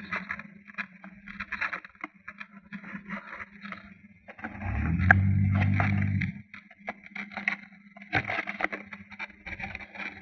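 Scraping and rustling right against a small camera's microphone over a faint steady hum. About four and a half seconds in, a low buzzing drone rises, holds for about two seconds and stops: the Blade 400 RC helicopter's electric motor spun up briefly.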